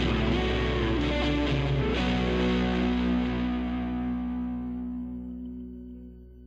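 Rock song ending on distorted electric guitar: the band plays until about two seconds in, then a final chord is left ringing and slowly dies away.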